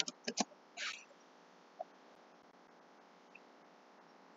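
Computer keyboard typing, faint: a few quick keystrokes in the first half second, then a short soft hiss about a second in, and quiet room tone for the rest.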